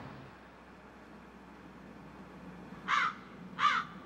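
A crow cawing twice, about three seconds in and again just over half a second later, over a faint steady background hush.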